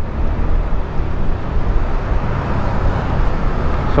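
Steady rush of wind and road noise on the microphone of a rider cruising at low town speed on an FKM Slick 400 maxi-scooter, its engine not standing out from the wind.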